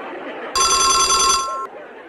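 Telephone bell ringing for an incoming call: one trilling ring of about a second, starting about half a second in.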